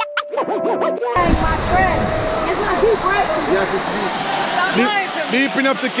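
Keyboard background music for about the first second, then a sudden cut to a tiered river waterfall rushing over rock, with a crowd of people talking and calling over the water.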